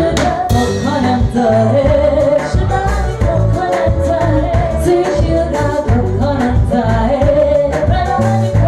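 Live band music: women singing a melody into microphones over electric guitar, bass and a steady drum beat.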